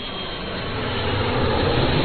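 A rising whoosh of noise that swells steadily louder: a riser sound effect opening the channel's intro jingle, building up to the beat.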